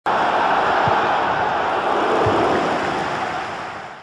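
Loud, steady rushing noise from an intro sound effect. It starts abruptly and fades away near the end.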